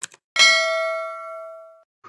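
Intro sound effect for a subscribe-and-bell animation: a short click, then a single bell-like ding that rings for about a second and a half and fades away.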